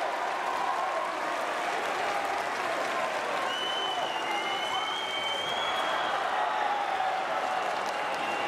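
Crowd in an arena applauding and cheering, with a high held tone for a couple of seconds around the middle.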